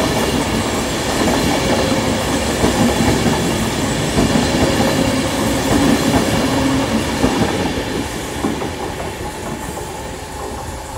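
Avanti West Coast Class 390 Pendolino electric train running past close by, with scattered short clacks in the middle. Its noise fades steadily from about eight seconds in as the rear of the train draws away.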